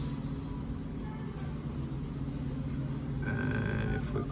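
Steady low background hum, then near the end a single short tone from an iPhone's phone keypad as the 6 key is pressed.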